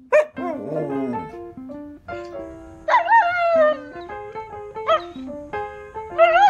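A dog 'talking' in several drawn-out, wavering woos and howls that bend up and down in pitch, over background music.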